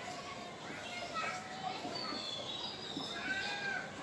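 Faint, overlapping high-pitched voices of children playing in the background, rising and falling in pitch.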